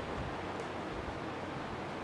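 Faint steady hiss of room noise with no distinct events.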